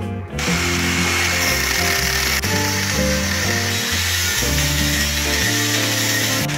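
Angle grinder with an abrasive cut-off disc cutting through a chrome stud nut clamped in a vise, a steady grinding noise that starts about a third of a second in and runs on unbroken.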